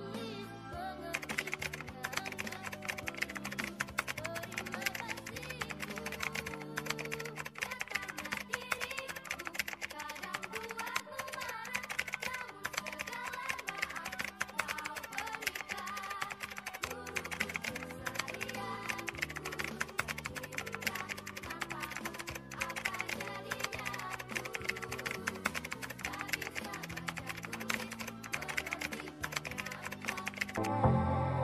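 Rapid keyboard-typing sound effect, a dense run of clicks from about a second in, matching text typed out letter by letter on screen. Background music plays underneath with a slow line of low notes.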